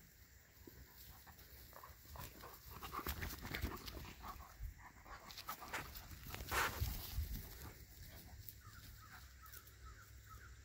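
Two dogs play-fighting on grass: a flurry of scuffling and short dog noises from about two seconds in, loudest about six and a half seconds in, then dying down.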